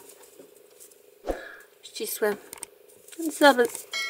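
A woman's voice in short soft snatches, with a single sharp knock about a third of the way in, over a faint steady hum.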